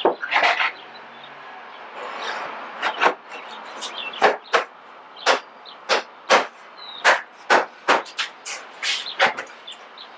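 2x4 lumber knocking and clattering against a plywood cornhole box as the frame pieces are set down and fitted in: an irregular string of sharp wooden knocks, with a short scraping slide about two seconds in.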